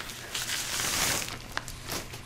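Plastic wrapping crinkling and rustling as a boxed speaker is pulled out of it, with a short click near the end.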